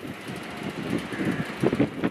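Steady outdoor background noise of a working harbour, with wind on the microphone.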